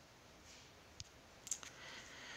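Faint clicks over quiet room tone: a single click about a second in, then a quick run of three or four about half a second later, the loudest at the first of them, as the on-screen drawing tool is opened.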